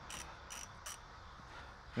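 Ratchet wrench clicking in three short, high bursts in the first second as it loosens an outboard motor's oil drain plug.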